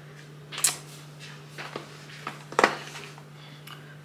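A few scattered short clicks and taps, the two loudest about half a second in and past the middle, over a steady low electrical hum.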